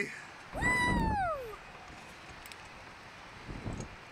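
A rider's high-pitched "Woo!" shout, its pitch sliding steadily down over about a second, over low wind rumble on the microphone. A short gust of wind rumble comes near the end.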